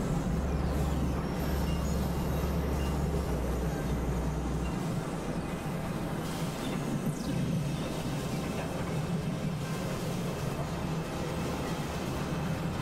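Experimental electronic drone music: a dense, noisy synthesizer drone with a strong low band. A steady deep hum under it cuts out about five seconds in, and faint falling whistle-like glides pass high above around the middle.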